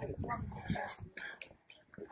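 Indistinct voices of people talking at low volume, with no clear words, fading to a lull near the end.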